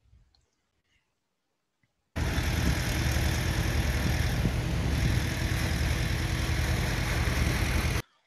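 A vehicle engine running steadily under a loud, even hiss, recorded on a phone. It starts abruptly about two seconds in, after near silence, and cuts off suddenly at the end.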